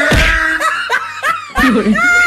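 High-pitched laughter in quick rising-and-falling bursts, over fading background music.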